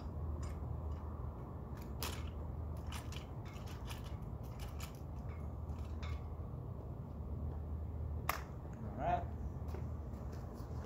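Metal telescope tripod being set up: scattered light clicks and rattles from its legs and leg clamps, with two sharper clicks, about two seconds in and near the end, over a steady low hum.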